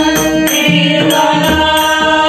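Marathi devotional bhajan: a harmonium holding steady notes under sung chant, small hand cymbals (taal) clashing in a regular beat, and a pakhawaj-style barrel drum.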